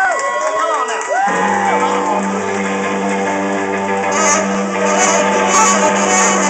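A live blues band with horns, electric guitars and drums comes in about a second in with a long held chord, after a drawn-out shout. Cymbal crashes join from about four seconds.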